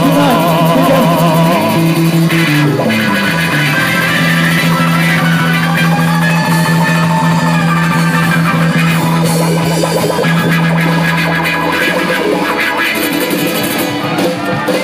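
Live amplified band music: ukulele and drums playing an instrumental passage, with one long low note held through the middle.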